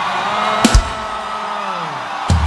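Live church music: a long held note that slides down in pitch over a noisy crowd, with two quick, loud drum hits about two-thirds of a second in.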